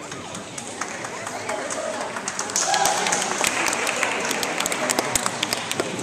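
Scattered hand clapping from a small group, growing denser and louder partway through, over the murmur of people talking.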